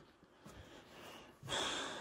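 Faint room noise, then about one and a half seconds in a man draws a breath in through his nose for about half a second.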